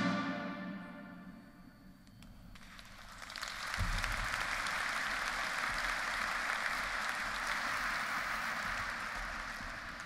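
A military band's final fanfare chord dies away with a long echo in a large domed hall, then the audience applauds steadily from about three and a half seconds in, easing off slightly near the end.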